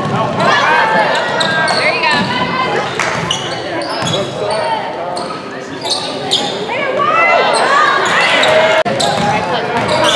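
Basketball game sounds in a large echoing gym: a basketball bouncing on the hardwood floor, sneakers squeaking, and players and spectators calling out and shouting throughout.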